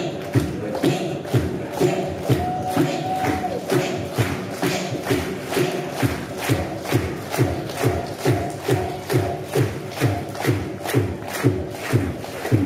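Mouth beatboxing into a microphone: a steady beat of kick-like thumps and crisp hi-hat-like clicks, a little over two a second, with a held vocal tone underneath.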